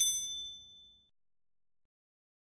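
A bright bell ding sound effect for a notification bell being clicked. It starts right after a sharp click, rings with a few high tones, and fades away within about a second.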